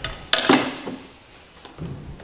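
Loose used engine parts clattering and clacking against each other in a plastic bin as a gloved hand rummages through them. The loudest metallic clack comes about half a second in, with a smaller one near the end.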